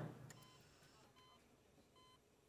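Near silence with a bedside patient monitor beeping faintly: three short, high beeps about 0.8 s apart.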